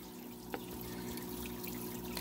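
Water draining and dripping through the holes of a small plastic colander lifted from an aquarium, falling back into the tank, with a small click about half a second in. A steady low hum runs underneath.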